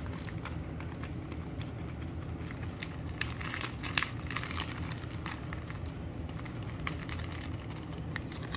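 Clear plastic bag of ground spice crinkling and a metal spoon clicking as spice is scooped out of it, in short irregular bursts that are busiest about three to four seconds in. A steady low hum runs underneath.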